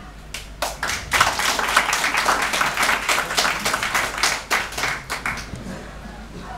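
Audience clapping. A few scattered claps swell within about a second into dense applause, which then thins out and dies away near the end.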